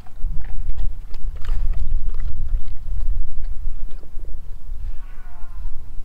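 A dog eating raw meat from a stainless steel bowl: scattered wet chewing and licking clicks over a heavy low rumble that dominates the sound.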